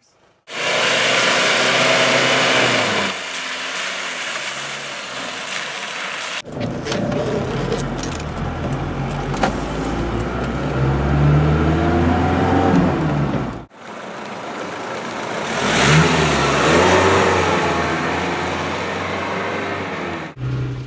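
1987 Mercedes-Benz G-Wagen 240 GD's diesel engine pulling through the gears of its manual gearbox, its note rising several times under acceleration, together with loud wind and road noise. The sound comes in three cut-together stretches, the first mostly wind and road noise.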